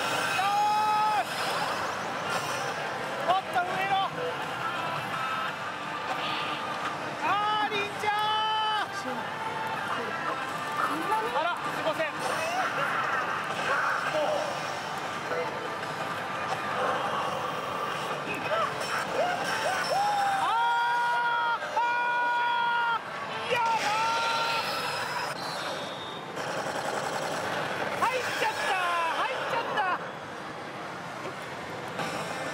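Pachislot machine music and sound effects over the steady din of a pachinko parlour, with voices and several drawn-out pitched sounds, the loudest a little over twenty seconds in.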